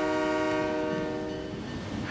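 Train horn sounding one long, steady multi-note chord that fades out near the end.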